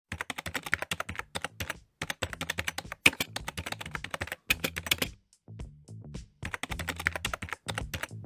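Computer-keyboard typing sound effect: rapid runs of key clicks, with short pauses about two seconds in and again after five seconds, matching title text being typed out letter by letter. Soft background music lies underneath.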